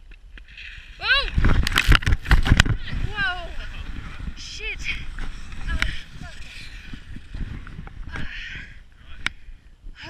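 A skier crashes into the person filming: a loud clatter of impacts and snow about a second in, with a cry at the moment of impact. Several short cries and groans of pain follow, with scattered knocks and rustling in the snow.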